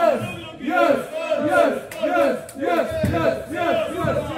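A crowd of supporters chanting and shouting together, loud short rhythmic calls repeated about three times a second, cheering on the bowlers.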